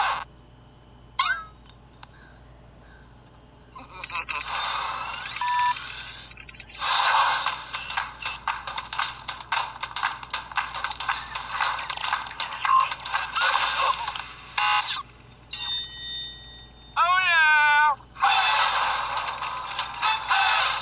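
Animated film trailer soundtrack: bursts of music and cartoon sound effects broken by short pauses, with a steady electronic tone and then a wobbling, swooping pitched sound near the end.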